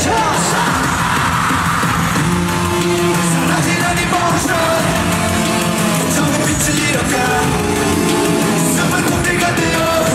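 Live K-pop concert music recorded from the arena audience: a loud pop-rock backing track over the PA with a member singing live.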